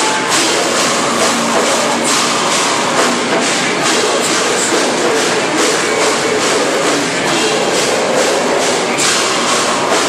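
Live rock band playing loud, with distorted guitars and steady drum and cymbal hits, recorded from within the audience.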